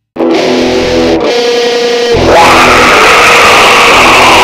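A heavy metal track starting abruptly after silence: electric guitars, with a high sustained note sliding up about two seconds in and held.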